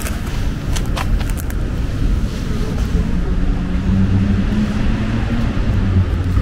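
Loud low outdoor rumble of a town street, with a few light clicks in the first second and a half and a steady low hum coming in from about two seconds in.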